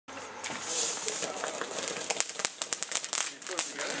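Consumer fireworks crackling: an irregular string of sharp pops and snaps with some hiss, while people talk in the background.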